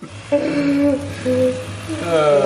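Cordless electric fillet knife switching on and running with a steady buzzing hum as its blades start cutting into a kokanee salmon. A person hums two short held notes over it.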